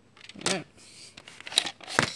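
A VHS cassette and its plastic clamshell case being handled: rustling plastic with a few sharp clicks near the end. A brief voiced sound, like a short murmur, comes about half a second in.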